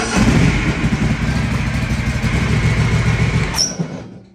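Riding lawn mower's engine running steadily, its no-start cured now that it has gas in the tank, then shut off and cutting out shortly before the end.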